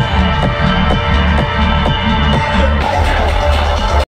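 Electronic dance music with a heavy, steady bass beat at about two beats a second.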